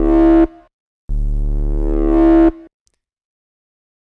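Distorted drum and bass synth bass from Serum, two sine oscillators driven through distortion, playing a low held note twice. Each note swells and grows brighter toward its end as an LFO raises oscillator A's level. The first note stops about half a second in, the second lasts about a second and a half.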